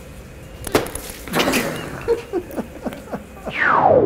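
A juice carton thrown and hitting a person's face: a sharp hit about three-quarters of a second in, then a noisy crash and a few small knocks. Near the end comes a long falling pitch glide, the loudest sound, a slowing-down sound effect.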